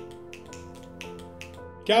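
Soft background music holding sustained chords, with scattered finger snaps, a dozen or so quick irregular clicks, from the audience in appreciation of the line just recited.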